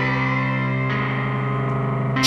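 Background music: a sustained, steady chord, with another layer joining about a second in.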